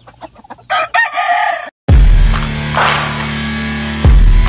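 A rooster crows about a second in and is cut off abruptly. Then loud music with heavy bass starts and runs on.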